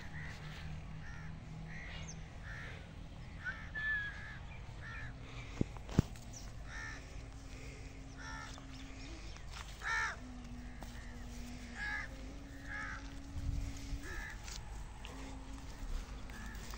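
Birds calling over and over in short calls, roughly one a second, with two sharp clicks close together about six seconds in. A low hum comes and goes underneath.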